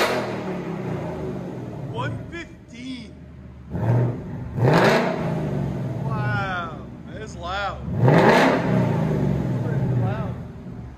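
Ford Mustang's 5.0 V8 through an aftermarket H-pipe exhaust, revved in short blips: one right at the start, a pair about four to five seconds in and another about eight seconds in, each rising sharply and falling back to idle. It reads about 90 dB on the meter.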